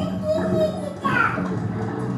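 Children's voices and chatter over background music, with a high, falling squeal about a second in.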